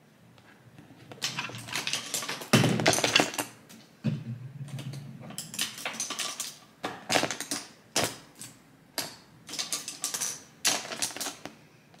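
Makeup brushes clicking and rattling against each other and a clear plastic brush pouch as they are slid in and handled: a dense clatter about three seconds in, then separate clicks about a second apart.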